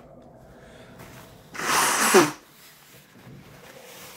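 A man blowing his nose hard into a paper towel, once, a single blast of about half a second near the middle, ending in a short falling grunt; his nose is being cleared against the burn of a super-hot chili pod.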